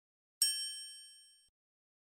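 A single bright chime sound effect, a "ding" struck about half a second in, ringing with several high tones and fading out over about a second, as in an animated logo intro.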